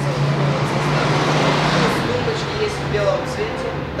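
A baby crib on casters being rolled across the floor: a rolling noise that swells from about half a second in and eases after about two seconds, over a steady low hum and a background murmur of voices.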